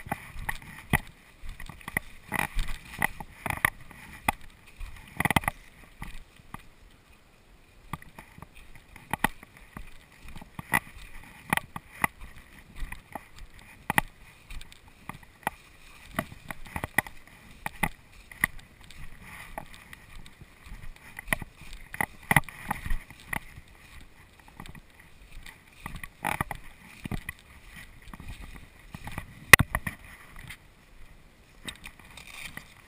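Footsteps and legs brushing through tall grass while walking an overgrown track: an irregular swish-and-crunch about every half second to a second. A faint steady high hum runs underneath.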